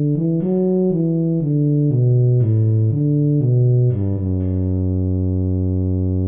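Tuba playback of a melody line in the low register: a run of short, evenly spaced notes stepping down in pitch, then one long low note held from about four seconds in.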